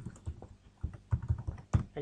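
Computer keyboard being typed on: an irregular run of key clicks, the loudest stroke near the end.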